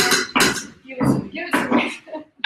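Speech: short bursts of a person's voice separated by brief pauses.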